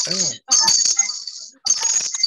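Repeated jingling, rattling bursts, about one a second, each starting sharply and fading, coming in over a video call from a participant's unmuted microphone. A short fragment of a voice sounds near the start.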